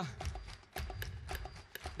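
A fast, even percussive beat of sharp knocks, about five a second, over a low steady rumble.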